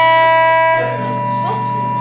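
A rock band's closing chord left ringing, with electric guitar and bass holding the notes, which grow quieter about a second in.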